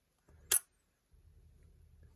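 Nikon DSLR shutter, one sharp click about half a second in, closing at the end of a one-second exposure.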